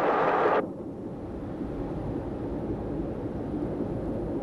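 British Rail Class 46 diesel locomotive running at about 100 mph: a loud rushing noise cuts off about half a second in, then a steady low rumble.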